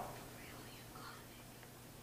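Quiet room tone with a faint steady low hum, as a man's voice trails off at the very start; a faint soft sound about a second in.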